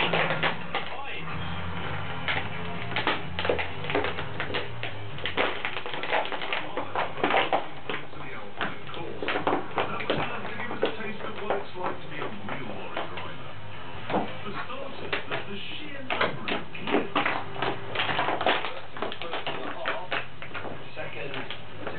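Television audio playing in the room, music with indistinct voices, over irregular short clicks and taps from a dog gnawing a toy.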